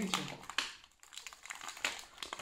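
Kinder Country chocolate bar's foil-lined wrapper crinkling in irregular crackles as it is peeled open by hand.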